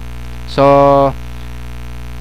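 Steady electrical mains hum in the microphone signal, with one drawn-out spoken "so" about half a second in.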